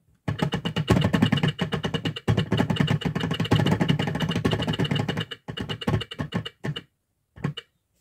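Plastic geared hands of a toy teaching clock clicking rapidly as the minute hand is turned by hand, in spells with brief pauses, tailing off into a few short bursts near the end.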